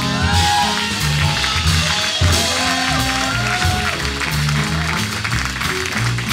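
Live jazz band: a walking double bass line and drum kit with electric guitar lines, and a spatter of audience applause as the guitar solo ends.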